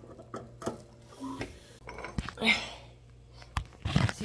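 A caulking gun being worked to lay seam sealer along floor-pan seams: a few scattered sharp clicks and knocks from the gun, with a short hissing rush about halfway through.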